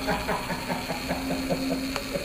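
Electronic sound effect of a laser tag phaser firing: a steady buzzing tone with rapid, even pulsing.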